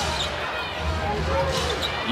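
Live basketball game sound in an arena: a steady crowd murmur, with a basketball being dribbled on the hardwood court and short high squeaks from players' sneakers.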